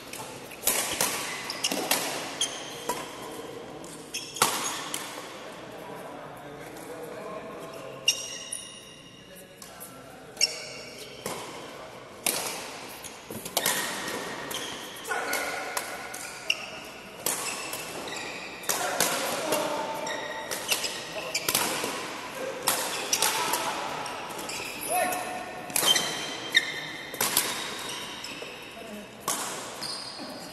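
Badminton rally in a large indoor hall: repeated sharp racket strikes on the shuttlecock and footfalls, mixed with short high squeaks of court shoes on the floor.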